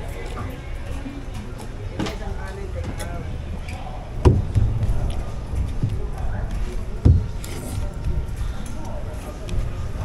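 Faint background voices and music over a low steady hum, with two thumps about four and seven seconds in.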